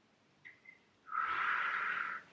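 A woman's audible breath, about a second long, starting about a second in, after two faint clicks.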